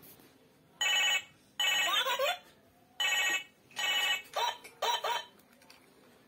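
Battery-operated children's toy giving out six short electronic bursts of ringing tones and chirpy synthetic phrases, each under a second, with some quick rising and falling pitch sweeps near the middle and end.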